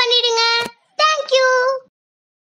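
A child singing in a high voice with long held notes. The phrase breaks off with a sharp click a little over half a second in, and a second held phrase stops abruptly just before the end.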